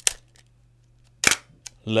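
Bronica ETRSi medium-format camera being worked by hand: a sharp mechanical click at the start, then a louder clunk a little over a second in, followed by a faint tick.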